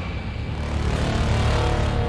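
Low, steady rumble of cinematic sound design, swelling about a second in, with a faint hum of tones above it, like a passing flying craft.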